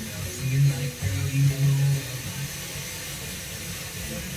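Music with a few low plucked, guitar-like notes coming from an FM radio broadcast, loudest in the first two seconds and fading after, over a steady hiss. The hiss is typical of a weak, long-distance FM signal.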